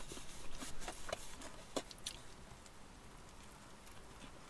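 A person chewing a mouthful of burger with crispy battered fish: a few faint crunches and mouth clicks in the first two seconds, then it goes quiet.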